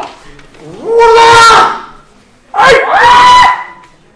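Two long, drawn-out kiai shouts from kendo fencers, each voice rising and then held at a steady pitch for about a second. The first comes about a second in and the second, sharper at its start, follows a second later.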